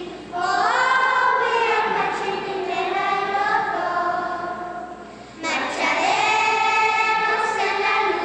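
Children's choir singing, with a short break about five seconds in before the next phrase comes in.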